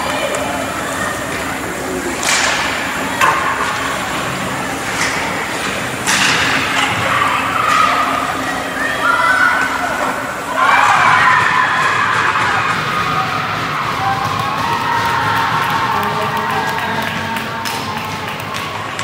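Live ice hockey play in an indoor rink: players and spectators calling out over skates and sticks on the ice, with a few sharp stick or puck knocks about two and six seconds in and a swell of voices about ten seconds in.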